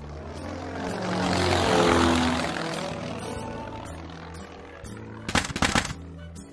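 Sound effect of a propeller aircraft flying over, swelling to its loudest about two seconds in and then fading away, over background music. A short clatter of knocks comes near the end.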